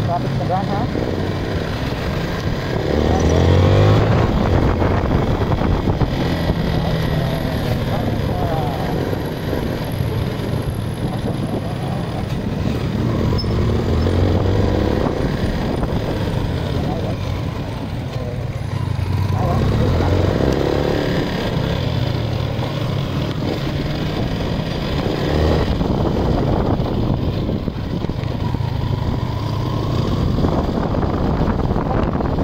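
Yamaha Sniper 155 motorcycle's single-cylinder four-stroke engine running on the move. It swells and rises in pitch as the bike accelerates several times: about three seconds in, again around the middle, and again in the last few seconds.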